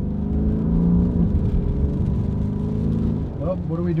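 Car engine and road noise heard inside the cabin while driving: a steady engine hum over a low rumble, a little stronger in the first second. A man's voice starts near the end.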